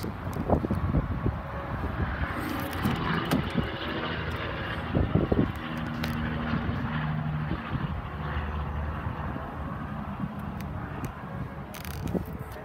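A distant engine's steady low hum, with a few short knocks and a clunk about five seconds in as a car's rear door is opened.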